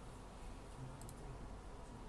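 A quick pair of faint computer mouse clicks about a second in, over low room hum.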